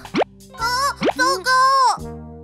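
Cartoon sound effects over children's background music: a quick rising pop just after the start, then a cartoon voice making three drawn-out wordless sounds, the last one falling away as it ends.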